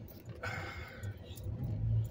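Vehicle engine and road rumble heard from inside the cabin while driving slowly, growing slightly toward the end. A short breathy hiss comes about half a second in.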